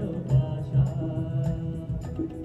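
Live band music in an instrumental passage of a Bengali song: held melody notes over a steady drum and bass beat.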